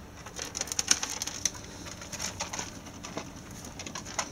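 Ferret dooking: quick runs of soft clucks that come in short irregular clusters, mixed with small clicks of it moving about.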